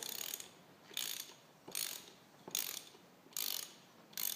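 Socket ratchet clicking as bolts on a Volvo Penta MD2010 engine block are tightened toward 30 newton metres, about five short bursts of clicks a little under a second apart, one for each back-swing of the handle.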